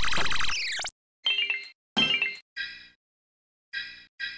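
Logo-animation jingles sped up four times: a dense burst of fast music with falling sweeps in the first second, then four short ringing chime-like notes, each dying away, with silent gaps between them.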